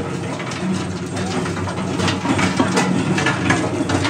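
Rock salt jaw crusher running: a steady motor hum under irregular cracking and rattling as salt lumps are crushed and grit pours from the discharge chute.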